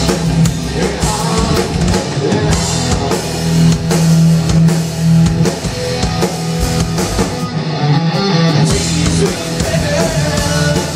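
Live rock band playing loud: a drum kit and electric guitars over a sustained bass line.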